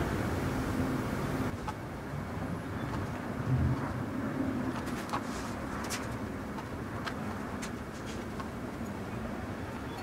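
Steady low background rumble, with a few faint, soft clicks and rustles from hands handling cotton shirt fabric and straight pins.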